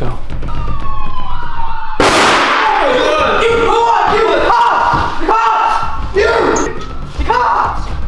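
A siren playing from a phone, then a small explosive going off about two seconds in with a really loud bang, followed by people yelling in alarm.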